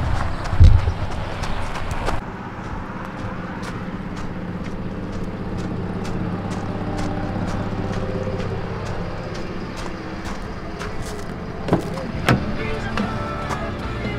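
A pickup towing an Airstream travel trailer driving off, heard as low rumbling for about two seconds. Then soft background music with held chords and a light steady beat takes over.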